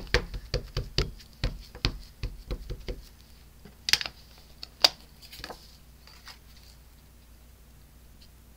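VersaMark ink pad dabbed repeatedly onto a rubber background stamp, soft taps several times a second, stopping about three seconds in. Two sharper clicks follow about a second apart.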